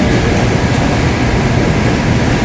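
Steady rumbling room noise with hiss and no distinct events.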